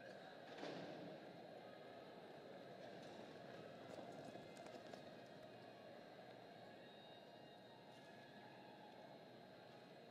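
Faint, steady arena ambience with a low murmur of distant voices, a short louder noise just after the start, and faint hoofbeats of horses galloping on soft arena dirt around four to five seconds in.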